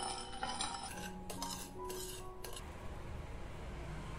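Metal spoon scraping and clinking against a ceramic plate as it stirs sugar and cinnamon together, in several strokes that stop about two and a half seconds in.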